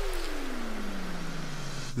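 Transition effect in an electronic dance track: one tone sweeping steadily downward in pitch over a wash of noise, with no beat, settling into a low note near the end.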